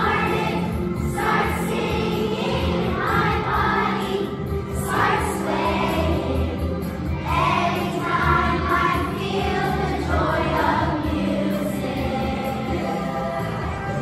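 Second-grade children's choir singing a song together with musical accompaniment, the young voices moving through phrases over steady low backing tones.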